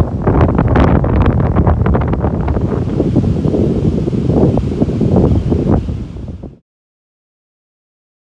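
Gusty storm wind buffeting the microphone hard, with breaking surf underneath; it cuts off suddenly near the end.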